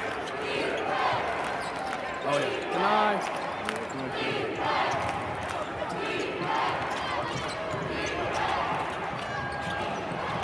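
A basketball being dribbled on a hardwood court during live play. The ball makes repeated short bounces over steady arena crowd noise, with voices calling out.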